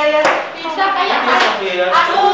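Classroom voices talking over one another, with two short sharp sounds, about a quarter second and about a second and a half in.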